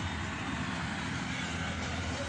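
Steady road noise from vehicles on a highway: a continuous low rumble with hiss above it.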